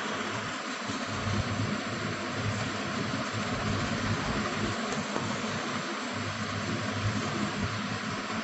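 Steady background hiss with a faint low hum: room noise with no distinct event.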